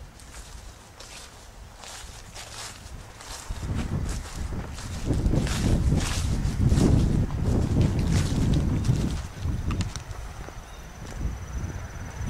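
Footsteps through dry grass, with wind rumbling on the microphone that grows loud about three and a half seconds in and eases near the end.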